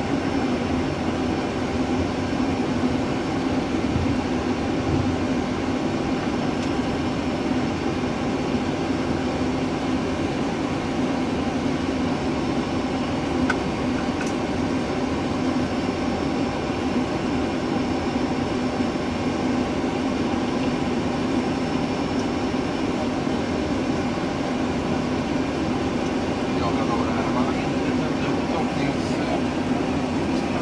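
Steady cockpit noise of a Boeing 737 taxiing on the ground, with its engines at idle and the air conditioning running, under a constant low hum.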